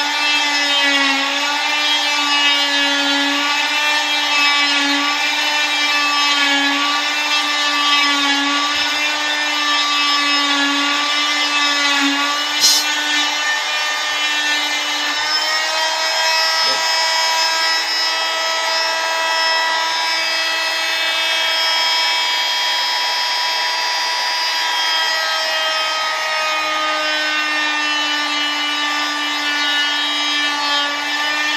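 Electric oscillating cast saw running with a steady high whine, its pitch wavering as the blade is worked along a leg cast to cut it off. There is a single sharp click about 13 seconds in.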